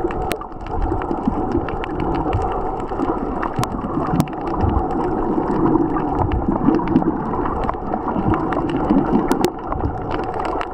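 Water sloshing and gurgling around a camera held underwater, heard muffled, with scattered sharp clicks throughout.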